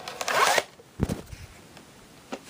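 A VHS tape being handled: a brief rustle and scrape of the cassette and sleeve, then a soft thud about a second in and a few lighter knocks as it is set down and shifted.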